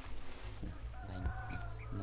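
A rooster crowing once, a drawn-out crow starting about halfway through and holding a steady pitch, over a steady low rumble.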